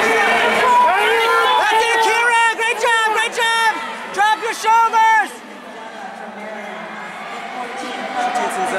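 A spectator's high-pitched voice yelling a rapid string of short shouts over indoor arena crowd chatter. The shouting stops about five seconds in, leaving only the crowd's hubbub.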